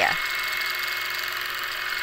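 Longarm quilting machine running steadily as it stitches: an even mechanical hum with a thin, steady high whine.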